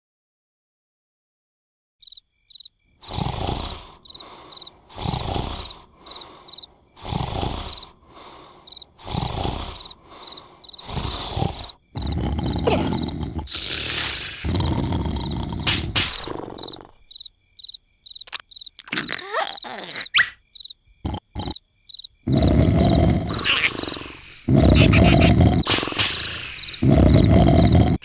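Cartoon snoring from a sleeping larva: snores about once a second after a quiet start, growing into long, loud snores in the second half. Crickets chirp steadily in the background.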